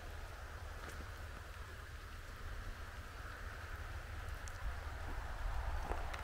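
Light rain falling steadily, a soft even patter with a few faint drop ticks, over a low steady rumble.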